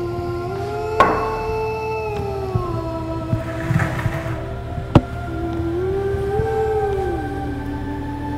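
Background film score of sustained synthesizer tones, the lower line slowly rising and falling twice. Two sharp knocks come through, about a second in and about five seconds in, with a few small knocks between them.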